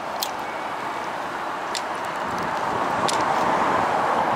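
Steady hiss of road traffic on a multi-lane street, swelling toward the end, with three short sharp clicks spread through it.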